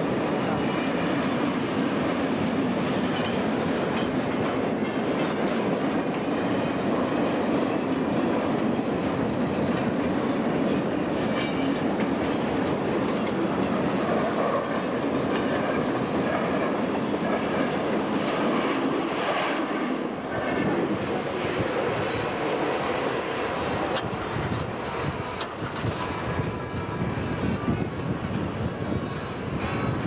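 A long freight train of closed wagons passing over a level crossing at speed: a steady rolling rush with wheels clattering over the rail joints. The low rumble drops away about two-thirds of the way through, and the sound becomes thinner and more uneven after that.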